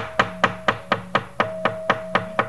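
A wayang kulit puppeteer's rhythmic knocking (dodogan) with a wooden mallet on the puppet chest, an even run of sharp knocks about four a second, over a faint steady held tone.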